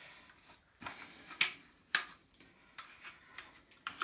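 Irregular sharp clicks and knocks from the ABS plastic corner brackets and chrome-plated steel bars of an appliance stand trolley being handled and set in place, three louder ones about a second in and fainter ticks after.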